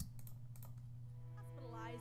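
Sustained orchestral string chord from a Logic Pro X Cinema Strings software instrument fading in about one and a half seconds in, under volume automation. It enters over a low steady hum, after a couple of soft clicks.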